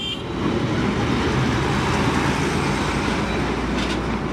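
Heavy trucks running, a steady rumble of engines and road noise.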